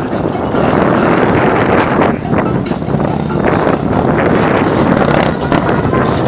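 Police motorcycle engine running at low speed through tight turns.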